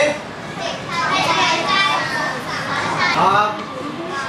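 A class of young schoolchildren's voices, several children speaking at once in a classroom.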